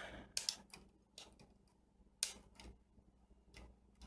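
Side cutters snipping the excess wire leads off freshly soldered transistors on a circuit board: a series of short, sharp snips at irregular intervals.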